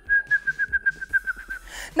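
A woman whistling one high note in quick repeated pulses, about seven a second, stopping a little before the end.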